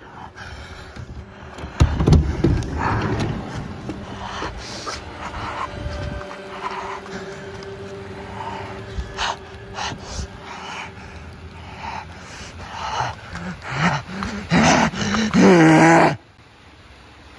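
A person's heavy, irregular breathing noises, ending in a pitched vocal cry over the last couple of seconds.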